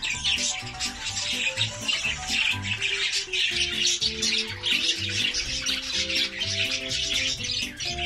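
Budgerigars chattering continuously in a dense, busy flock warble, heard over background music with a steady bass beat.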